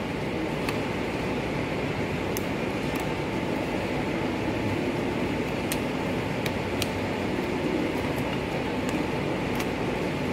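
Steady background hum and hiss, like a fan or ventilation running, with a few faint high clicks scattered through.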